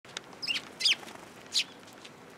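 Eurasian tree sparrows chirping: three short, sharp chirps within about a second and a half, with a fainter one just before.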